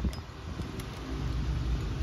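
School bus engine running nearby, a low steady rumble.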